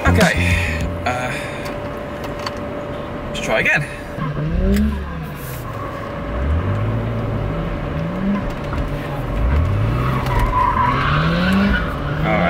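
BMW E36 straight-six engine revving in repeated pulls, its pitch climbing and dropping back about five times, heard from inside the cabin during drifting. Tyres squeal near the end.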